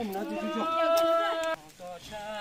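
A person's voice drawn out into one long, nearly level call lasting about a second and a half, which then stops abruptly.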